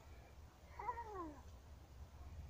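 A cat meowing once, about a second in: a single drawn-out call that rises briefly and then falls in pitch, over a low rumble.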